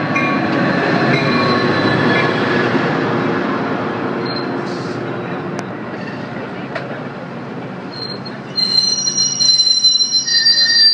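Metra diesel commuter train with bilevel stainless-steel cars rolling past close by, the rumble fading as it slows. About a second and a half before the end, a high-pitched squealing sets in as the train brakes to a stop.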